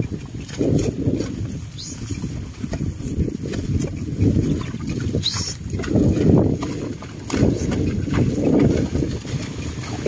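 A carabao hauling a loaded sled through wet mud: irregular low sloshing and dragging that surges every second or two as the runners and hooves work through the muck.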